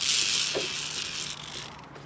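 Zipline trolley pulley running along the steel cable: a hissing metallic whir that starts suddenly and fades away over about a second and a half.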